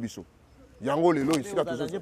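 Speech only: a man talking, with a short pause early on before he carries on.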